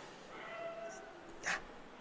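Faint pitch-side sound in a gap in the commentary: a faint, drawn-out voice-like call, like a distant shout across the field, and a brief soft rush of noise about one and a half seconds in.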